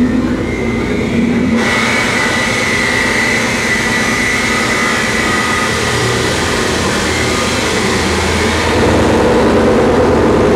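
Harsh noise music played live on effects pedals and electronics: a loud, continuous mass of distorted noise over a steady low drone. About one and a half seconds in, a hissing upper layer suddenly cuts in, and near the end the low part grows louder.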